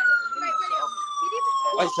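Police siren wailing: one long tone gliding slowly down in pitch, with voices talking under it near the end.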